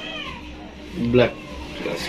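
Two short pitched vocal calls: one falling in pitch at the start, then a louder one rising in pitch about a second in.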